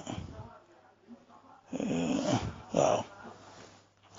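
A person's voice: after a pause, one drawn-out vocal sound and then a shorter one, between bouts of speech.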